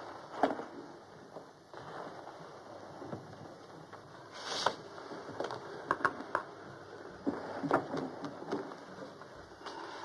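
Scattered small clicks and rustles of papers being handled on a map table, over the steady hiss of an old film soundtrack, with a brief louder hiss about four and a half seconds in.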